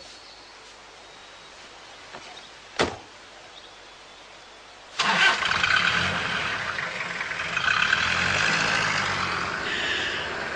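A single sharp knock a little under three seconds in, then a car engine starts suddenly about five seconds in and keeps running loudly.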